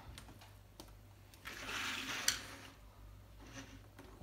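A computer keyboard slid across a wooden desktop: a scraping shuffle lasting about a second, with a sharp clack as it is set down about two seconds in. A few small clicks right at the start come from a PS2 plug being seated in its socket.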